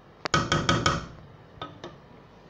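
A wooden spoon knocked against the rim of an aluminium cooking pot: about five quick sharp knocks, each with a short metallic ring, then two lighter taps near the end.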